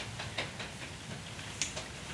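Quiet room noise with a low steady hum and a few light, short clicks and rustles.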